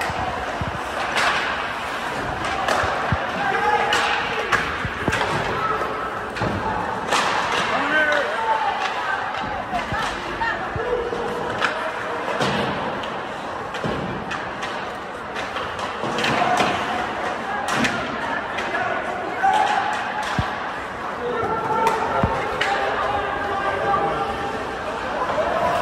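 Ice hockey in play: repeated sharp knocks and thuds of puck, sticks and players against the boards and ice, over indistinct voices of players and spectators.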